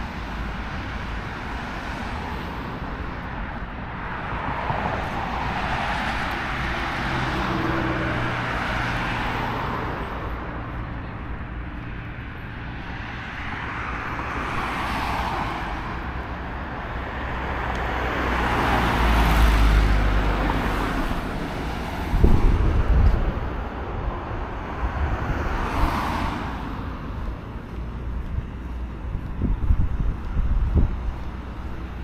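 Road traffic on a multi-lane city avenue: several cars pass one after another, each a rising and falling swell of tyre and engine noise, the loudest about two-thirds of the way through with a deep rumble. A few short low thumps follow in the last third.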